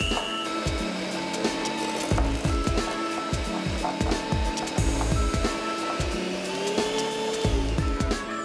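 Handheld electric mixer running, its beaters whipping plant-based shortening in a glass bowl, with a steady motor whine. The pitch lifts for about a second near the end, and the mixer cuts off at the end. Irregular low thuds run underneath.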